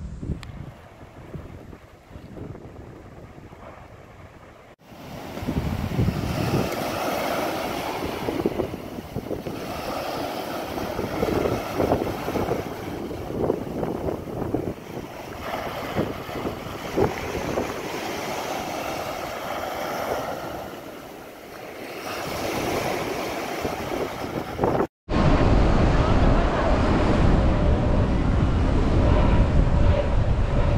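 Small waves breaking and washing up a sand beach, the surf swelling and ebbing every few seconds. Near the end it cuts off suddenly and a steady low rumble takes over.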